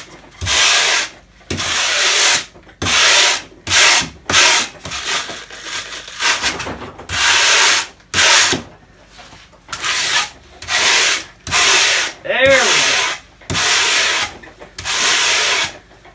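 Wire brush raked hard along a board of pink insulation foam, in repeated scraping strokes about one a second with short pauses between them, digging grooves into the foam to make a faux wood grain.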